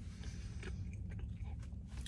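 A person chewing a mouthful of food (barbacoa, cheese and soft tortilla chips), faint, with small soft mouth clicks over a low steady hum.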